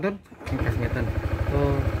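Honda PCX 160 scooter's single-cylinder engine starting about half a second in and then idling with a steady, even pulse: the idling-stop system bringing the engine back to life after it had cut out at a standstill.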